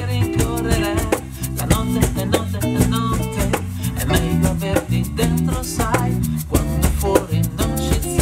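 A band playing live: electric guitar and electric bass over a fast, even percussion tick, with a male voice singing.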